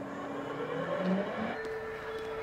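Electric airport cart's motor whining, rising in pitch as it speeds up, then holding a steady tone.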